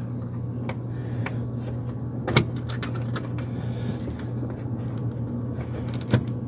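Sharp metal clicks and taps of a hook-and-eye latch being worked one-handed on a wooden dehydrator door, a handful of them with the loudest knock a little over two seconds in, over a steady low hum.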